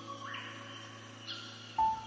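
Soft instrumental worship piano music at a quiet point between phrases: a held chord fading away, then a single note struck near the end.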